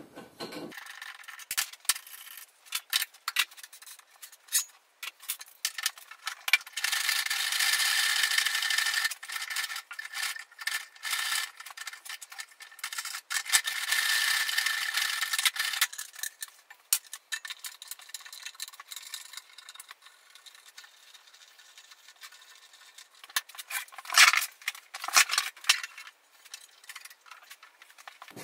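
Metal and wooden parts of a planer-thicknesser being handled while it is converted from jointer to thicknesser: a string of clicks, knocks and rattles, two long scraping stretches of a few seconds each, and a louder cluster of knocks near the end.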